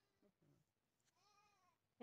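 Near silence, with one faint, short call that rises and falls in pitch about a second in.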